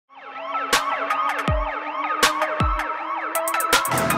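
Intro sting for a police TV programme, built from layered siren wails over sustained synth tones. It is punctuated by sharp hits about every second and a half and by deep falling bass drops.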